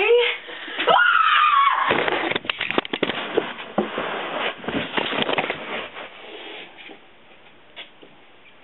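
A girl's high cry rising and held for about a second, then a jumble of knocks, clatter and rustling as the camera is knocked to the floor and handled, dying away near the end.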